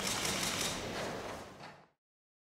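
Rapid, overlapping clicks of several press cameras' shutters firing at a photo call, fading away near the end.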